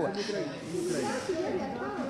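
Voices of reporters talking over one another, away from the microphones, with a short hiss in the first second or so.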